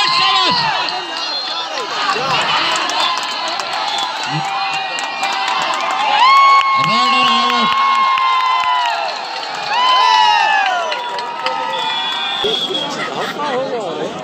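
Large crowd of kabaddi spectators cheering and shouting, with several long drawn-out shouts rising and falling over the din, the longest a few seconds in and again near ten seconds.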